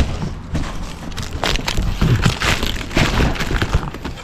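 Hand truck loaded with a large cardboard box being wheeled over grass and pavement: an irregular, continuous clatter of wheels, metal frame and cardboard knocking and scraping.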